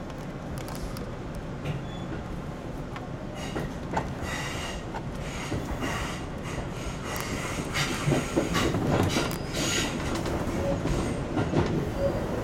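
Tobu 10000 series electric train running on curving track, heard from inside the leading car. A steady rumble of wheels on rail is broken by clicks and short high wheel squeals. These set in a few seconds in and grow louder in the second half.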